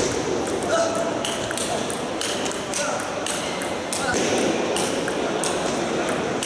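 Table tennis rally: the celluloid ball clicking sharply off rackets and the tabletop, about two hits a second, over the murmur of voices in a large hall.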